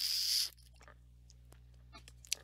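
A short, sharp breath out into a headset microphone, like a stifled laugh, lasting about half a second. After it comes low room tone with a few faint clicks.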